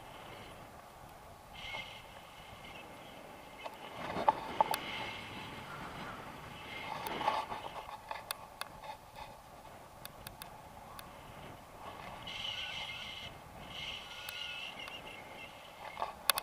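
Wind rushing over an action camera's microphone during a tandem paraglider flight, with scattered sharp clicks and knocks. The loudest clicks come a little over four seconds in.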